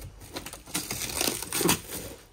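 Plastic wrapping crinkling and cardboard rustling as a boxed part is unwrapped by hand, in irregular bursts of handling noise.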